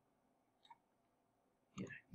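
Near silence with a single faint computer mouse click about a third of the way in; a man's voice starts near the end.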